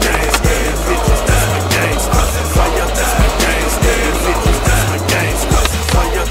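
Skateboard on concrete, with wheels rolling and the sharp clacks of the board popping and landing, heard under hip-hop music with a steady beat.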